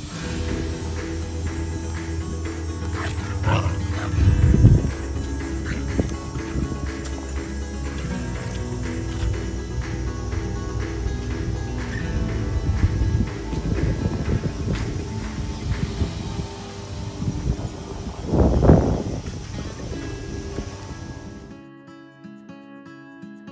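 Background music, with a dog growling twice in play over a stick, once about four seconds in and again near the end.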